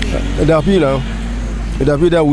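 A man speaking, with road traffic running in the background and a steady low hum under it.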